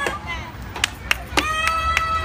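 A few sharp clicks, then, about halfway through, a young child's voice holding one long, high-pitched note.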